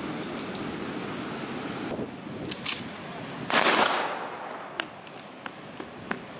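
Open-air background noise with a few faint clicks, then a sudden burst of noise about three and a half seconds in that lasts about half a second and dies away.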